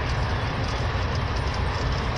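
Steady low rumble of road and engine noise inside a car's cabin while it is being driven.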